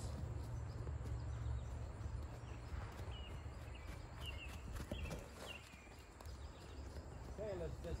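Gypsy mare's hooves thudding softly on sand as she trots on a lunge line, under a steady low rumble.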